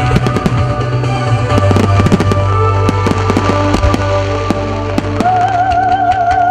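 Fireworks going off in a rapid string of sharp bangs and cracks: aerial shells bursting and low-level mines firing, over loud music from the display. About five seconds in, a held, wavering note enters the music.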